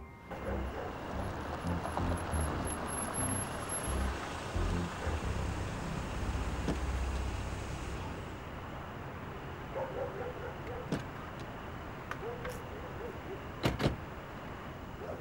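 Mercedes-Benz saloon's engine running at low speed as the car pulls up, dropping to a quieter background after about eight seconds. A car door shuts with a sharp knock near the end.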